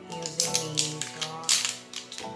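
Background music: held notes over a sharp, clicking percussion beat.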